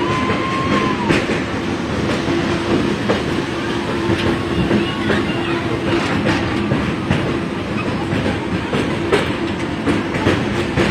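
Passenger express train running over a steel girder bridge, heard from a coach doorway: a steady rumble of wheels on rail with irregular clicks as the wheels pass rail joints.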